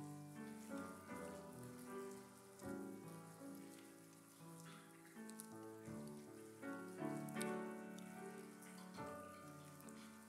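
Soft, slow instrumental music, held chords changing every second or so, playing quietly under a faint hiss with a few light clicks.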